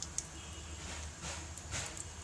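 Cumin, fenugreek and mustard seeds spluttering in hot mustard oil in a pan: a faint sizzle with a couple of sharp pops near the start.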